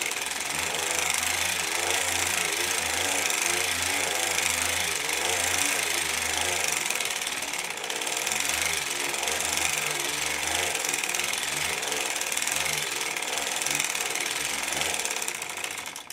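Tru-Knit hand-cranked circular sock machine with ribber running steadily, its cam ring turning and the cylinder and ribber needles clattering through the cams as it knits knit-one-purl-one ribbing.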